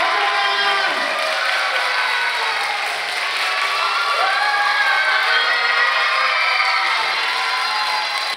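A large, young audience cheering and screaming together, steady and loud throughout, over music.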